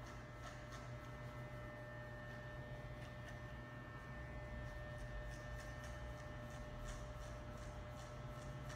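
Corded electric hair clipper running with a steady low hum as its blades cut through a client's hair, giving short, crisp strokes that come more often in the second half.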